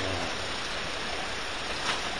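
Steady rushing noise of a freshly lit Vigas wood gasification boiler drawing air through its open bottom door as the fire takes hold, with a short click near the end.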